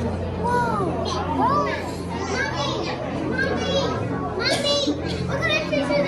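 Children's voices chattering and calling out, with several high-pitched rising-and-falling cries, over a steady low hum.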